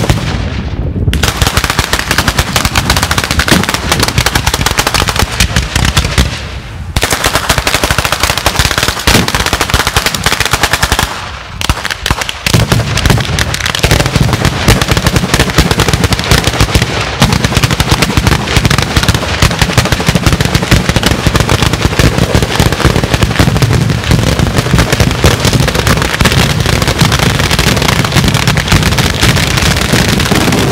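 A Sanseverese-style fireworks battery (batteria): ground-laid chains of firecrackers going off in a dense, continuous rattle of loud bangs like machine-gun fire. It drops out briefly about six seconds in and again around eleven seconds, then resumes heavier and fuller.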